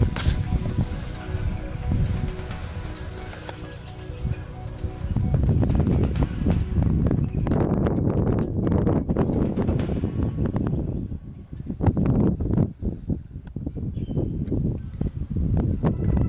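Wind buffeting the microphone in irregular gusts, a heavy low rumble that swells from about five seconds in. Background music with held notes sits under it at the start.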